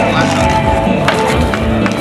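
Music and voices, with two sharp clacks about a second apart.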